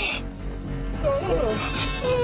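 Cartoon soundtrack: background music with a short vocal sound from a character about a second in.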